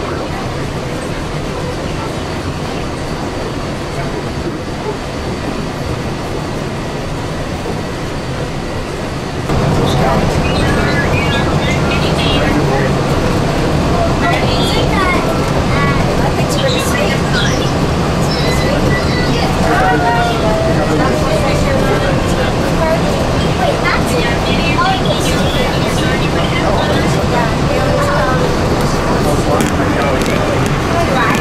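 Steady running noise inside a moving monorail car, with a low rumble. About nine seconds in it suddenly gets louder, and indistinct voices of passengers chattering come in over it.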